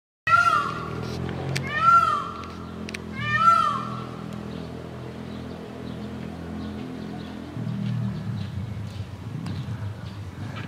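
Three high, whining calls from a young moose, about 1.5 s apart in the first four seconds, each rising and then falling in pitch. A low steady hum runs underneath.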